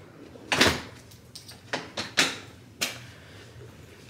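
Front door being handled: a clunk about half a second in, then three sharper clicks and knocks over the next two seconds.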